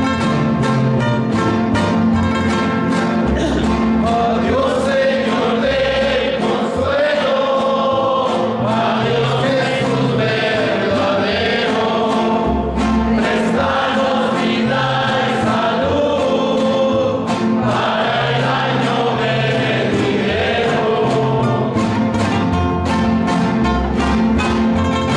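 A small string group plays acoustic guitars and a plucked upright bass. About four seconds in, several men's voices join, singing a slow song in harmony.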